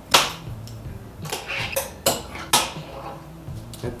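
A fingerboard's wheels, trucks and deck clacking and rolling on a hollow fingerboard box: about five sharp clacks from pops and landings over a low rolling rumble, the loudest just after the start.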